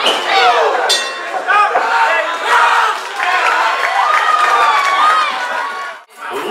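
Arena crowd shouting and cheering loudly, many voices yelling over one another, with a sharp knock about a second in. The sound cuts off abruptly at the end.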